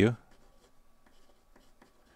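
Felt-tip marker writing on paper: a run of faint, short scratching strokes.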